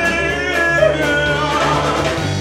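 Live rock-and-roll band playing: a man singing held notes over electric guitar, electric bass, drums and keyboard.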